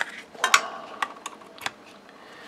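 About half a dozen sharp plastic clicks and taps from a small USB meter being picked up and handled against a USB charger, the loudest pair about half a second in.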